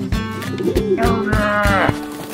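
Guitar-led cartoon background music with a steady beat. About a second in, a cartoon character's drawn-out grumbling vocal sound comes in over it and swoops sharply upward at the end.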